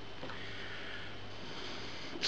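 Quiet room with a low steady hum and a faint, drawn-out breath through the nose.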